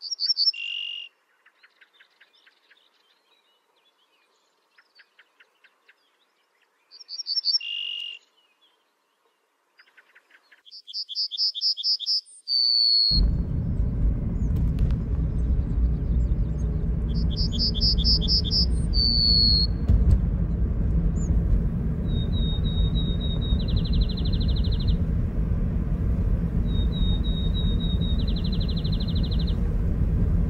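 Birdsong: a repeated two-note whistled call falling in pitch, then quick trilled phrases. About 13 seconds in, a steady low rumble of a car driving starts suddenly, heard from inside the cabin, and the bird trills go on over it.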